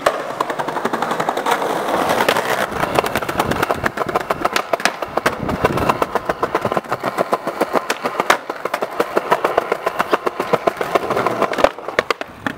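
Skateboard wheels rolling over a paving-slab pavement: a steady rumble with many quick clicks, and one sharp knock near the end.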